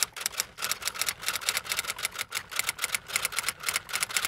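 Rapid, slightly uneven clicking of typing keystrokes, about seven strikes a second.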